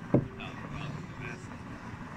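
A single dull thump just after the start, then faint background voices over a low steady rumble.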